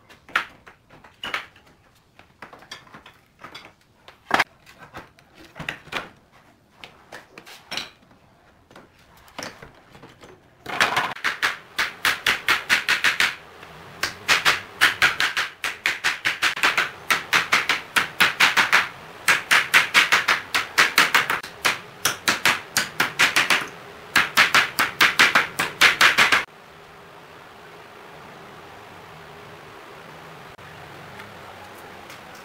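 A claw hammer driving nails into pine pallet boards: runs of quick, sharp strikes, about five a second, with short pauses between runs, stopping suddenly near the end. Before that, a third of the way in, scattered single knocks as a pallet is pried apart with a pry bar and hammer.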